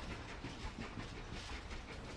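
Faint, steady rumble of a train carriage running on the rails.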